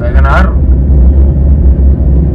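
Loud, steady low rumble of road and wind noise from a vehicle on the move. A short spoken word comes at the very start.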